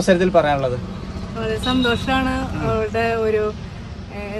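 A woman talking inside a car's cabin, with the car's steady low hum underneath her voice.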